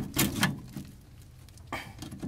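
Screwdriver working a screw in rusted sheet metal, with a few quick metal-on-metal scrapes and clicks in the first half second, a quiet stretch, then one short scrape near the end.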